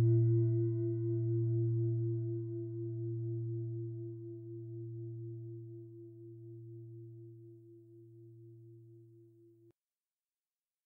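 A struck meditation bell ringing out and slowly fading. A deep hum lies under a clearer tone that wavers in a slow pulse, and the sound cuts off suddenly just before the end.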